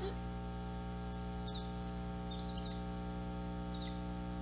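A few brief, high bird chirps, one about a second in, a quick cluster of three around the middle and one more near the end, over a steady low hum.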